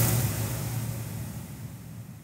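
Whooshing sound effect with a steady low hum, fading away gradually, on an animated logo end card.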